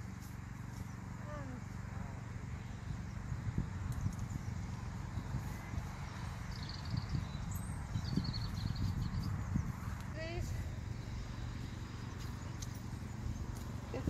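A piebald cob pony's hooves thudding softly on grass turf as it trots and canters around on a lead rope, over a steady low rumble.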